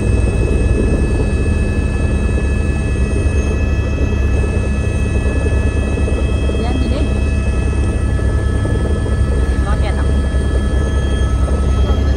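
Engine drone, steady and loud: a low rumble with several constant high whining tones, like a vehicle or aircraft under way.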